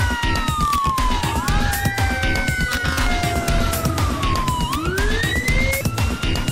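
Several emergency-vehicle sirens wailing at once, their pitch sliding slowly down and then swinging back up, over background music with a steady beat.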